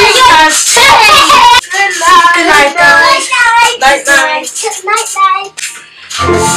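Young girls' high voices laughing and squealing playfully in quick bursts, dying away shortly before the end.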